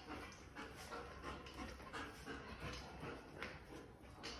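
German Shepherd panting quickly and rhythmically, about two to three breaths a second, while tugging on a rope toy.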